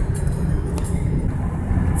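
Steady low rumble of a car driving along the road, heard from inside the cabin: engine and tyre noise.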